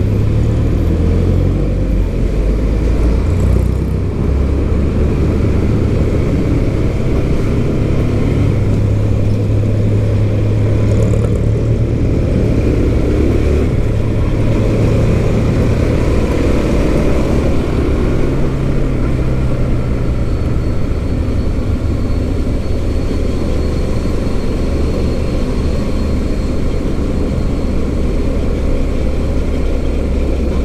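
Motorcycle engine running at low speed in slow traffic, a steady low hum under a heavy rumble of wind and road noise.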